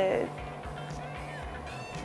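A woman's drawn-out hesitation vowel 'eee' trailing off in the first moment, then quiet with faint background music.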